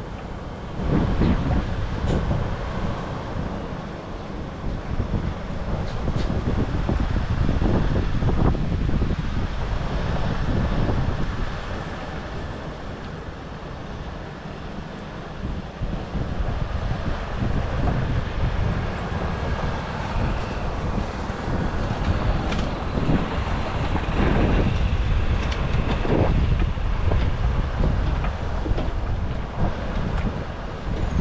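Semi truck on the road: engine and road rumble with wind buffeting the microphone. The level swells about a second in and rises and falls through the rest.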